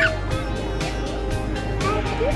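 Background music with a gliding melody line over regular percussive beats.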